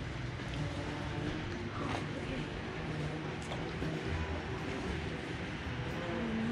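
Automatic pool cover motor running with a steady low hum as the cover retracts.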